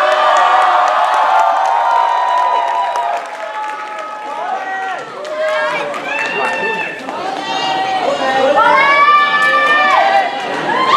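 A cheerleading squad and crowd shouting and cheering, many voices at once. A dense chorus of shouting fills the first three seconds, then it thins to scattered shouts, with rising shouts and whoops about six seconds in and again near the end.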